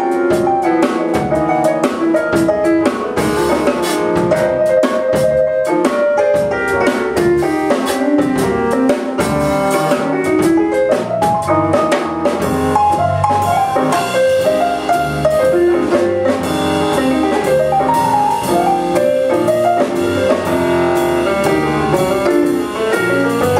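Live jazz band playing an instrumental passage: electric keyboard, bass guitar and drum kit, with an alto saxophone joining the melody.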